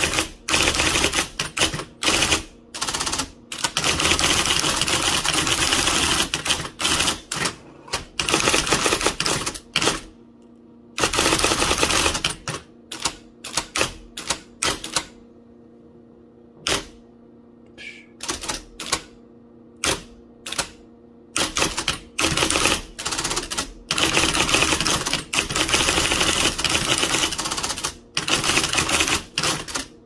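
1980 IBM Selectric III electric typewriter typing rapidly: its golf-ball typing element strikes the cardstock in fast runs of keystrokes, broken by a few short pauses. A steady motor hum shows through in the pauses.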